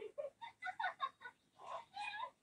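A couple's short moans and giggles in quick succession, heard through a television's speaker.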